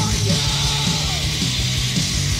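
Hardcore punk demo recording: distorted electric guitars, bass and drums playing fast, with a yelled vocal held for about a second that then drops off in pitch.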